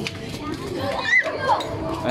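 Children's and adults' voices talking and calling out, with a high child's call about a second in.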